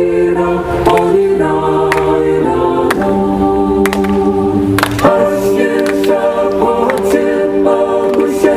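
A mixed vocal ensemble of women's and men's voices sings in harmony, holding long notes that move to a new chord every second or so.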